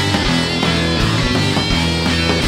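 Live rock band playing loud: electric guitars and bass over a steady drum beat.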